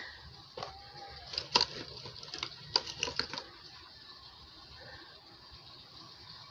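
Light clicks and taps of objects being handled, in quick little clusters through the first three and a half seconds, then a quiet small room.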